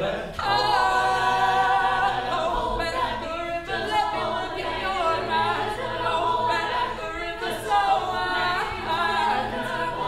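Mixed-voice a cappella group singing, with no instruments: several voices hold sustained chords over a low bass line, and the chords change every few seconds.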